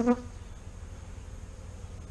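Honey bees of an opened Saskatraz colony buzzing steadily, a low even hum from the bees on and around the brood frame.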